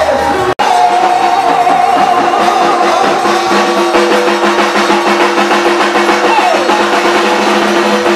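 Lively live praise music with a drum kit keeping a steady beat under long held notes. The sound cuts out for an instant about half a second in, then resumes.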